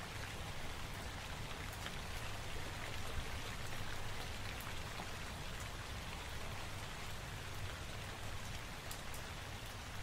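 Steady rain falling on a surface, with many small drop ticks scattered through it, over a faint low steady hum.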